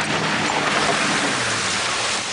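Muddy water rushing and splashing against a 4x4 as it drives through a large puddle, heard from inside the cab, with the engine running low underneath.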